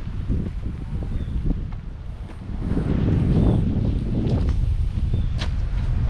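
Wind buffeting the microphone: a low, uneven noise that grows louder about two and a half seconds in, with a few faint clicks over it.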